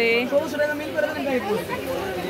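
People talking: speech and chatter, with no other sound standing out.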